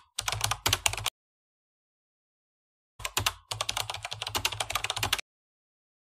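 Computer keyboard typing sound effect: rapid keystroke clicks in two bursts, one in the first second and a longer one from about three seconds in to just past five, with dead silence between.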